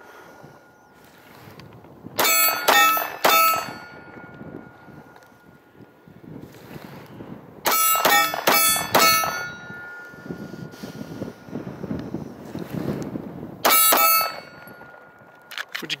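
Sig P6 (P225) 9mm pistol fired in quick strings: about four shots a couple of seconds in, about five more around eight seconds, and a single shot near the end. Several shots are followed by a steady metallic ringing from the steel target being hit.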